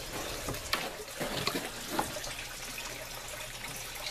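Steady rush of running water in an aquaponics fish tank system, with a few faint knocks.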